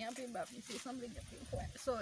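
Quiet speech: soft, broken snatches of a woman's voice. A low rumble sits under it in the second half.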